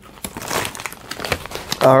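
Plastic potato chip bag crinkling and rustling as it is handled, a dense run of crackles through most of the moment. A man's voice starts right at the end.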